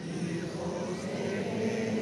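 Large crowd singing together, many voices holding long notes that blend into one continuous sound, with the pitch stepping up slightly about halfway through.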